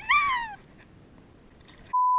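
A short, high-pitched whoop of a person's voice right at the start, rising then falling in pitch. Just before the end a steady, high bleep tone begins.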